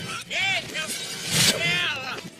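Animated-film soundtrack played backwards: two reversed vocal cries, each an arching rise and fall in pitch, over music, the second with a burst of noise under it.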